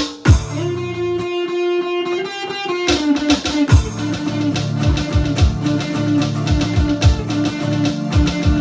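Live instrumental band: lead electric guitar, acoustic rhythm guitar, keyboard and an electronic drum pad. About a quarter second in, the drums stop on a hit and a long held note rings over the keyboard; about three seconds in, the drums come back in with a steady beat under the full band.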